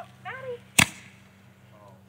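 A firework goes off with a single sharp bang a little under a second in.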